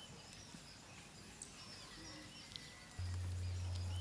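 Faint outdoor ambience with scattered short bird chirps and a thin steady high note. A steady low hum comes in about three seconds in.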